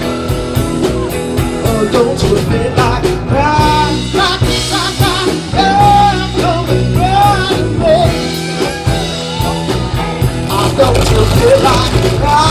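Live band playing a soul song: a singer holds and bends long notes over electric guitar, bass and a steady drum beat.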